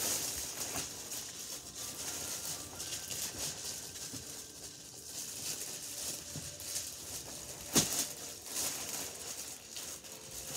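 Clear plastic wrapping crinkling and rustling as it is handled and pulled at around a folded foam mat, with one sharp snap about eight seconds in.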